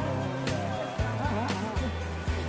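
Background music with a steady beat and sustained bass notes.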